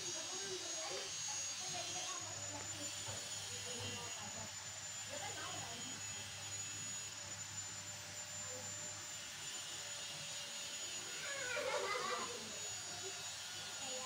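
Faint background voices over a steady hiss, with a brief louder vocal sound near the end.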